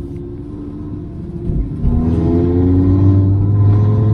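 Audi RS3's tuned 2.5-litre five-cylinder turbo engine heard from inside the cabin at low speed. It runs softer for the first couple of seconds, then pulls gently from about two seconds in, the engine note louder and slowly rising.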